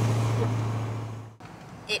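Steady low drone of a truck driving on the road, engine and road noise heard from inside the cab, cutting off abruptly about a second and a half in.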